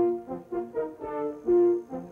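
Brass-led music from a 1960s commercial soundtrack: a melody of short notes, with a loud held note at the start and another about one and a half seconds in.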